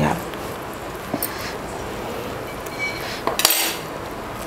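Stainless steel kitchen utensils clinking: a light knock about a second in and a short metallic clatter near the end.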